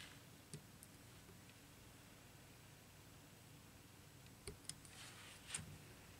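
Near silence with a few faint clicks, one about half a second in and a short cluster near the end, from a razor blade picking at the insulation of a fan power cord.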